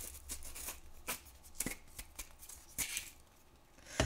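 Quiet, irregular clicks, taps and rustles of hands handling craft supplies and a jar at a work table, with a faint steady low hum underneath.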